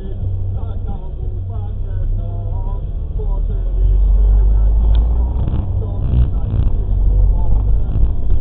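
Vehicle engine and road rumble, low and heavy, growing louder about halfway through as the vehicle pulls away from a standstill and gathers speed.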